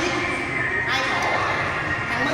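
Indistinct voices of several people talking at once in a large room, with no one voice clearly in front.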